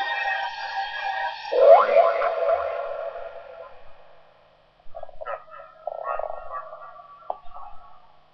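Electronic sound effects in a gabber track's interlude: a held tone gives way, about one and a half seconds in, to a sudden rising sweep that fades out over the next two seconds, followed by short scattered blips.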